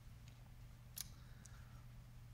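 Near silence: room tone with a faint low hum and one short, sharp click about a second in.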